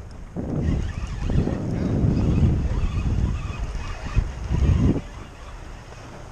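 Wind buffeting the microphone on open water, a low rough rumble that rises about half a second in and dies down about five seconds in. It is a sign of the wind picking up.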